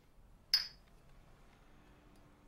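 Two ceramic coffee cups clinked together once in a toast: a single short, bright clink with a brief ring about half a second in.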